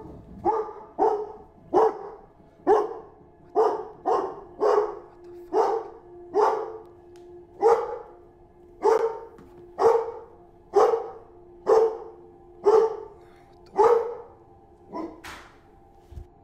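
A dog barking loudly and repeatedly, about one bark a second, set off by someone forcefully shaking and twisting the doorknob.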